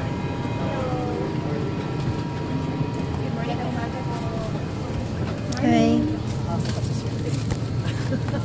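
Steady hum inside an airliner cabin, with passengers' voices chattering over it; one voice rises louder about three quarters of the way through.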